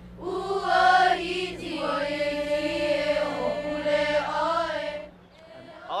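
A group of children chanting together in unison, long drawn-out vowels gliding up and down; the chant ends about five seconds in.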